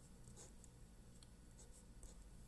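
Faint scratching of a pen drawing lines on paper, a few short strokes.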